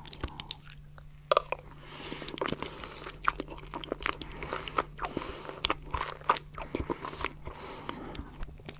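Mouth sounds of eating stracciatella mousse pudding: soft, wet chewing with many quick clicks and a slight crunch from the chocolate flakes.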